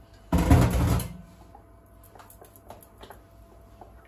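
A sudden loud bump with a short burst of rustling noise, lasting well under a second, then faint light clicks and scrapes of a wooden spoon stirring a batter in a steel pot.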